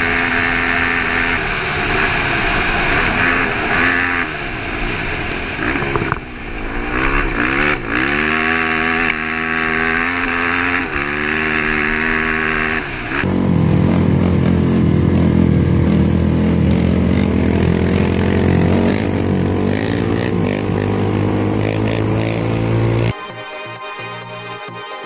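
Honda TRX450R's single-cylinder four-stroke engine accelerating hard through the gears on a dirt track, its pitch rising and dropping in repeated sweeps at each shift, with wind on the helmet-camera microphone. About halfway it cuts abruptly to a steadier, deeper engine note.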